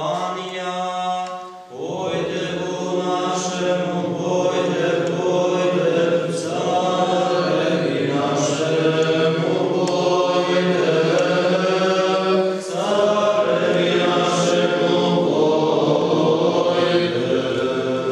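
Men's voices singing a Greek Catholic (Byzantine-rite) liturgical chant in long held phrases, with short breaks about two seconds in and about thirteen seconds in.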